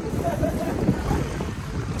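Wind buffeting the microphone as an irregular low rumble, over city street noise.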